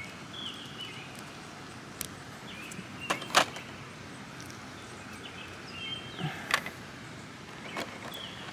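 Small plastic clicks and snaps as an action figure's hair piece is pulled off and a replacement is pressed on: a few scattered clicks, with two close together about three seconds in the loudest.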